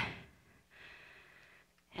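A woman's spoken phrase trails off, then a faint breath out about a second in.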